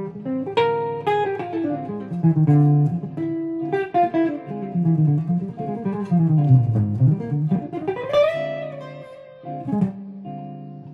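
Semi-hollow electric jazz guitar playing single-note lines over a repeating D minor 7 flat 5 chord vamp, outlining an A-flat major 7 sharp 5 sound. The line winds down to the low register and sweeps quickly back up about eight seconds in.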